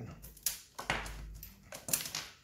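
Handling noise from a smartwatch and its magnetic charging cable being picked up on a table: a few light clicks and a short rustle.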